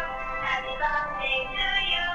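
Dancing talking cactus toy singing in a high-pitched, sped-up synthetic voice, its notes held and gliding.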